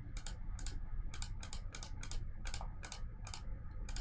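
Rapid, irregular clicking of a computer mouse, about three or four clicks a second, as mesh faces are selected one after another.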